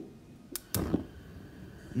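Gas stovetop burner being lit: two sharp igniter clicks about half a second in, a quarter second apart, as the burner catches and burns with a blue flame.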